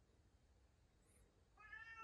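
A domestic cat meows once, faintly, starting about one and a half seconds in. The call is a single arching tone. Before it there is near silence.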